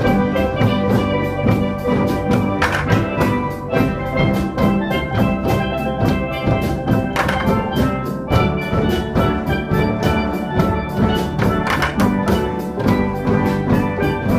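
Steel pans ringing out a tune, struck with mallets, over a steady fast beat on plastic bucket drums and an electric bass guitar, played by a youth steel drum band.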